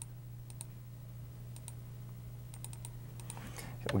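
Light computer mouse clicks in small scattered groups, faint, over a steady low electrical hum.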